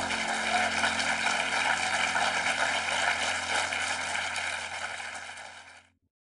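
Audience applauding, with quiet steady music tones underneath. Both fade out just before the end.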